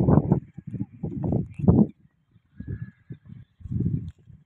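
Wind buffeting an open-air microphone in irregular low puffs, heaviest in the first two seconds and weaker after.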